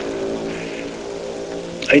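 A steady, low drone of several held tones running without a break.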